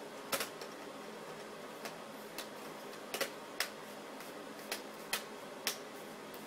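Plastic LCD bezel of an Acer TravelMate 8572G laptop snapping back into its clips as fingers press around the screen edge: about nine sharp clicks at irregular intervals.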